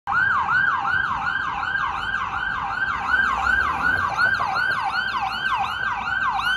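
Ambulance siren on its fast yelp setting, a rise-and-fall sweep repeating about three times a second, running steadily.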